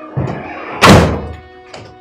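A door slammed shut with a loud thud just under a second in, after a lighter knock, over background music.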